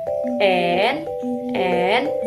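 A woman singing an alphabet song for children over a backing track of steady held notes, with two drawn-out sung syllables, the second starting about halfway through.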